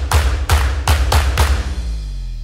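Logo intro sting: a fast run of heavy percussive hits with deep bass, about three a second, ending on a low tone that falls away near the end.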